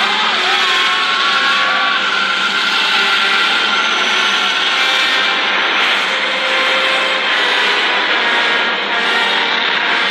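Loud film soundtrack: a dense, steady rush of sound effects with music underneath and a few wavering tones.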